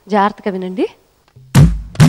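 A voice calls out briefly, then after a short pause hand drums come in about a second and a half in: two deep tabla strokes, their pitch bending downward, opening the song's rhythm.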